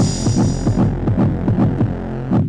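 Electronic music winding down: low throbbing pulses, about five a second, over a steady low hum, with the higher sounds fading out about halfway through.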